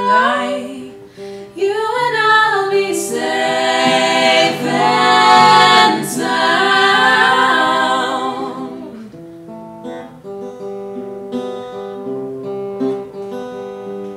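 Acoustic guitar accompanying three voices singing together, holding long notes. The voices stop about nine seconds in, leaving the guitar playing on alone.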